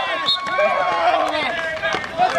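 Several men's voices shouting and calling out together, overlapping: field hockey players cheering a goal.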